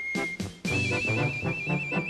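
Marching-band music, with a high two-note trill held from just under a second in to the end.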